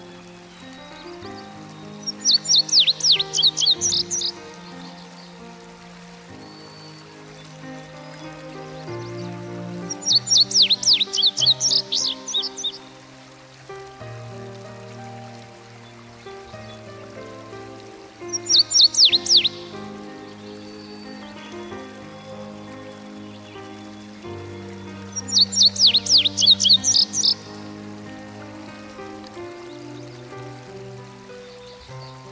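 A songbird singing four bursts of rapid, high chirping notes, each burst about two seconds long and the third one shorter, over soft background music of slow sustained chords.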